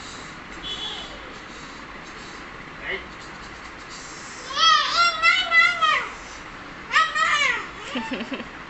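A toddler squealing with excitement: a run of quick high-pitched squeals about halfway through and a shorter run near the end, over a steady background hum.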